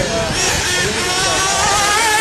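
Radio-controlled race cars running on the track. Their motors whine at several overlapping pitches that slide up and down as the cars accelerate and slow, over a steady wash of noise.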